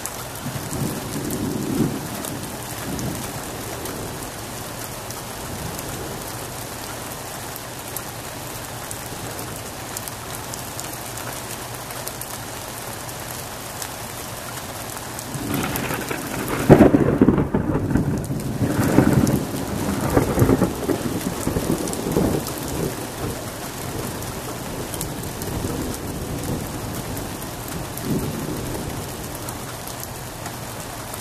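Steady rain falling, with a low roll of thunder about a second in. About fifteen seconds in, a much louder thunderclap breaks and rolls on in several swells for about ten seconds before fading.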